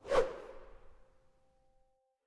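Whoosh transition sound effect: a single sweep of noise that starts sharply and fades out over about a second, with a faint held music note under it.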